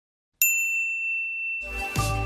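A single bright chime struck about half a second in, its high tones ringing on; music with a deep bass comes in near the end.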